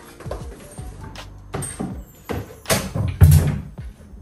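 Handling of a large plastic water jug: irregular knocks, bumps and short rustling bursts, the loudest a heavy thump a little past the middle, over background music.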